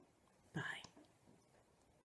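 A woman's soft, breathy 'bye' about half a second in, then near silence: faint room tone.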